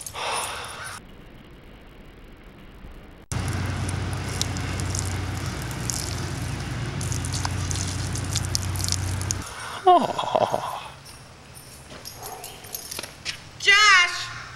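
A steady stream of urine splashing for about six seconds, starting and stopping abruptly, as a man pees on someone lying on the ground. It is followed by a short cry that falls in pitch.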